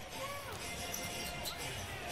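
Faint basketball game broadcast sound: a basketball bouncing on a hardwood court under arena crowd noise, with a faint commentator's voice.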